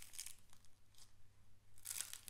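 Near silence: faint room tone with a few soft, faint crinkles.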